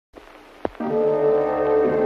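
Opening title music of a 1950s–60s TV anthology: after a faint hiss and a single click, a sustained chord of held tones comes in a little under a second in and holds steady.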